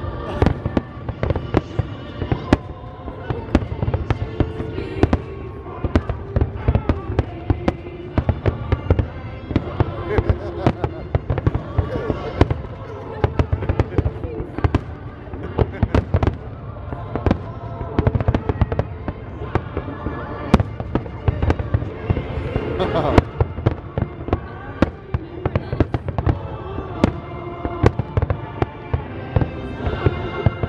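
Aerial fireworks shells bursting in a dense barrage, many sharp bangs in rapid, overlapping succession, over the show's music soundtrack.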